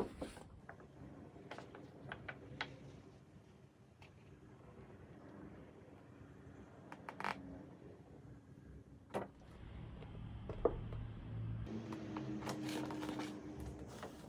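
Faint scraping and rustling of a plastic sheet dragged across wet acrylic paint on a canvas, with scattered light clicks. A low steady hum comes in near the end.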